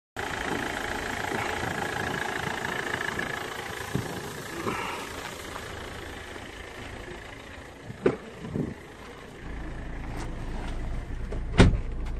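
Small Hyundai diesel engine idling steadily with the hood open. About two-thirds through come a sharp click and a second knock, then a loud car-door thud near the end; the idle then carries on as a low hum inside the cabin.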